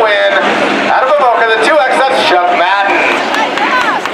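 A voice talking, the words not made out.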